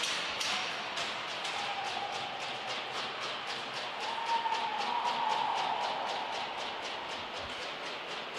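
Hockey rink ambience right after a goal: a steady crowd and arena din with music carrying a fast, even beat of about five taps a second over the rink's sound.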